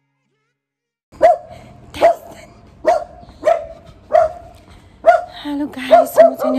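A dog barking repeatedly, seven barks a little under a second apart, starting about a second in.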